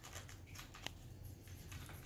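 Faint small clicks and rustles of fingers picking at the tape and wrapping paper of a small gift, with one sharper click about a second in.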